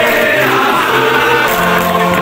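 Many voices singing together in a choir-like chant with music, held notes changing in steps.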